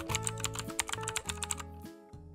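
Quiet, rapid computer-keyboard typing clicks, a sound effect laid over soft background music; the clicks stop about a second and a half in and the music runs on.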